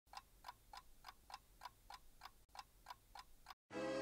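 Faint, steady ticking of a watch or clock, about three and a half ticks a second. Music cuts in loudly just before the end.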